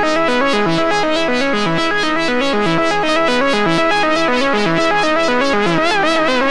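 GForce Oberheim SEM software synthesizer playing a fast sequenced monophonic pattern of short notes, about six a second, stepping through a repeating melodic line. Near the end the pitch starts to wobble as VCO1 modulation is turned up.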